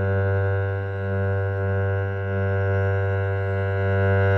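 Cello played with a single long up-bow on a low open string: one steady, sustained note with no bow change.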